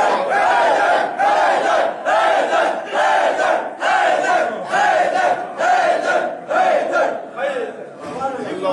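A crowd chanting a short phrase in unison, repeated about once a second, nine times over.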